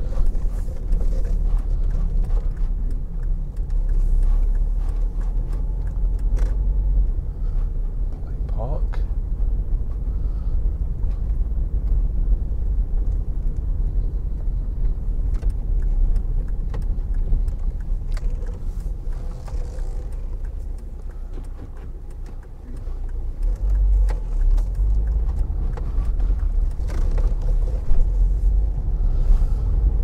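A car driving slowly, heard from inside the cabin: a steady low rumble of engine and tyres that dies down about two-thirds of the way through and then picks up again.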